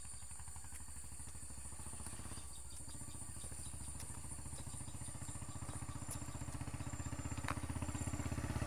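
Motorcycle engine running as the bike rides along: a steady, rapid low pulsing that grows slightly louder toward the end.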